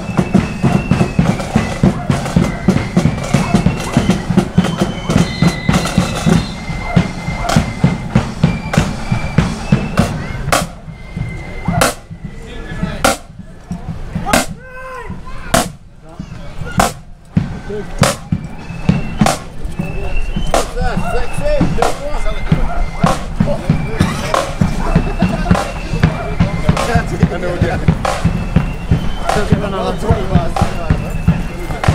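Marching flute band playing: a high, shrill flute melody over steady bass drum and cymbal beats. For a few seconds midway the flutes mostly drop out, leaving the drum beats, then the tune returns.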